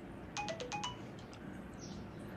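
Mobile phone text-message alert tone: a quick, faint run of about four short notes, stepping down in pitch and then back up.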